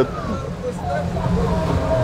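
Twin-motor catamaran's engines running steadily under way, a constant low hum.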